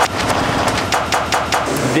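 A wheeled suitcase rattling fast along a jet bridge floor with running footsteps: a rapid, loud clatter of several knocks a second over a steady rumble.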